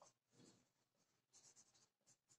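Near silence, with a few faint strokes of a marker writing on a whiteboard.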